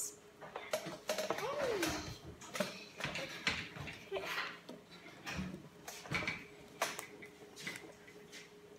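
A cloth wiping and rubbing across a whiteboard in quick, uneven strokes, with scattered light knocks and brief bits of children's voices.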